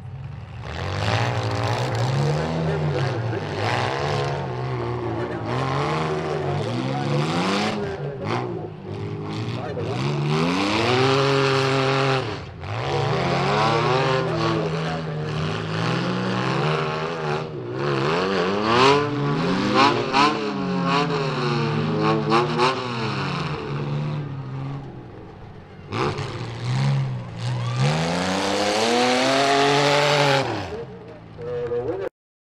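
Engines of several demolition derby cars revving up and down again and again, with a few sharp knocks in between and a lull a little after the middle.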